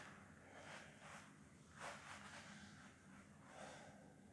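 Near silence, with a few faint breaths from a man exercising.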